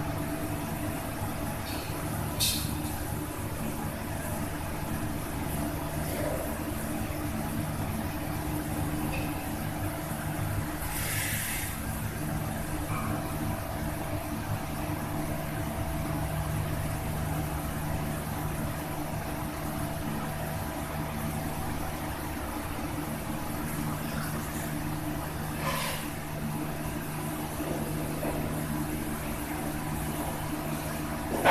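Steady mechanical hum with a constant low tone, broken by a few short clicks and one brief hiss about eleven seconds in.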